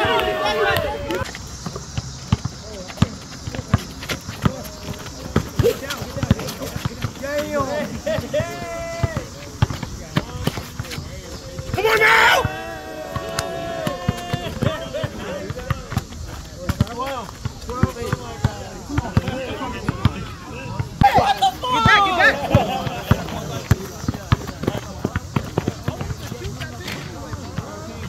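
A basketball bouncing and dribbling on an outdoor asphalt court, with scattered knocks throughout, and players shouting. The loudest shout comes about twelve seconds in, as a shot drops through the hoop.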